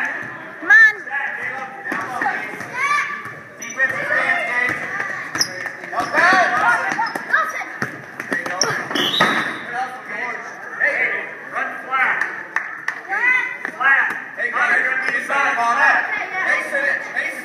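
Basketball game in an echoing gym: a ball bouncing on the hardwood floor, sneakers squeaking, and players and spectators calling out over one another.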